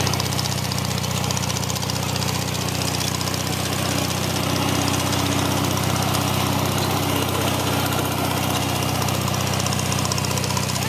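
Wheel Horse 18 hp garden tractor engine running at a steady speed as the tractor drives along.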